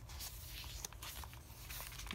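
Paper pages of a handmade junk journal being handled and turned, a faint rustle with a few small ticks.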